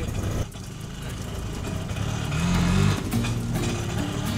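Auto-rickshaw engine running, with background music playing over it.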